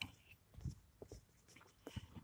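Near silence, broken by a few faint, short scuffs and taps.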